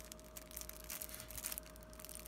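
Faint crinkling and crackling of cellophane shrink wrap on a deck of trading cards as fingers pick at it, trying to break it open, with the crackles coming thicker in the second half.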